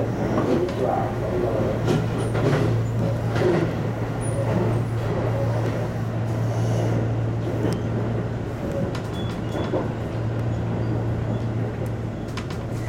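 Tobu 10000 series electric commuter train running on the rails, heard from inside the train: a steady low hum under continuous rail running noise, with scattered short clicks. The sound eases slightly near the end as the train slows into a station.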